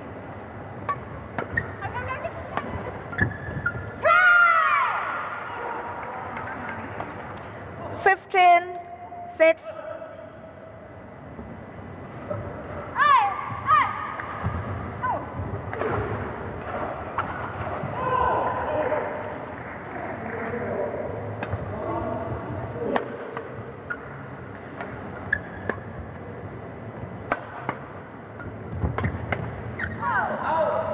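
Badminton rally: sharp racket strikes on the shuttlecock, court shoes squeaking in several loud bursts as the players move, over a murmur of voices in the hall.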